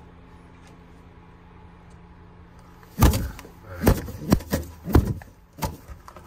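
Male racing pigeon defending its nest box, striking out with its wings: after about three seconds of quiet, a run of sharp, irregular slaps and thumps.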